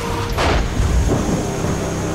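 A sharp falling whoosh with a low boom, then the steady low drone of an aircraft cabin in flight starting near the end.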